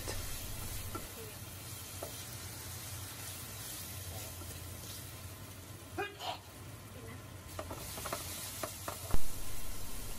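Chicken and holy basil stir-frying in a non-stick frying pan: a steady sizzle, with a few light clicks of the spatula against the pan in the first couple of seconds.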